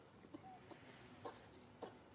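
Faint, short animal clucking calls, a few of them, the two clearest in the second half, with one brief chirp about half a second in.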